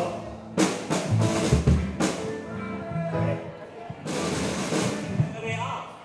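Live rock band playing on stage: a drum kit with three cymbal crashes, bass notes and other instruments, with a voice over it, dropping quieter near the end.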